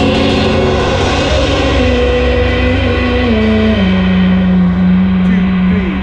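Live rock band playing: a singer holds long notes that step down in pitch, ending on one long held note, over a cymbal wash that fades away and a full bass and drum backing.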